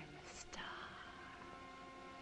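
A woman's faint, breathy gasp about half a second in, followed by low, steady held tones.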